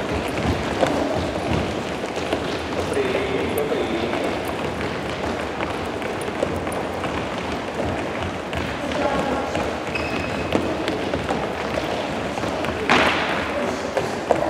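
Many children's footsteps thudding on a sports hall floor as they jog and lift their knees in a group warm-up, with scattered children's voices. A short, louder noise comes near the end.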